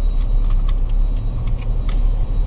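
Steady low rumble of a car's engine and tyres heard from inside the cabin as the car moves slowly, with a few faint ticks.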